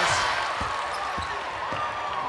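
Basketball being dribbled on a hardwood court, a bounce about every half second, over steady arena crowd noise.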